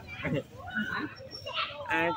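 Quieter voices of people talking in the background, in short broken snatches.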